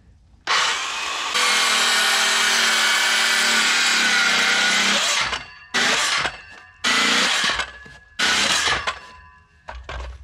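Handheld circular saw crosscutting a one-inch board: the motor spins up and runs through one cut of about five seconds, its pitch sagging slightly under load, then runs in three short bursts.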